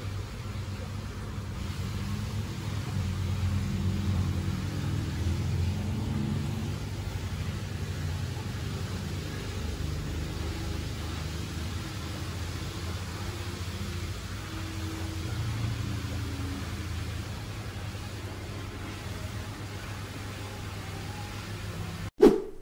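Steady low rumble with a hum beneath it and an even hiss above, swelling a little twice: continuous background machinery noise.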